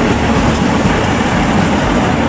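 KiHa 85 series diesel limited express train running past at close range: a steady low rumble of its underfloor diesel engines and wheels on the rails.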